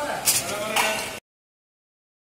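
A person's voice, cut off suddenly a little over a second in as the audio ends.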